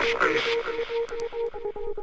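Trance music: a fast, repeating pattern of pulsed synthesizer notes with no kick drum, and a swelling noise sweep that fades away over the first couple of seconds.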